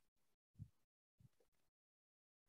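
Near silence on a video-call line, broken by one faint, short low sound about half a second in.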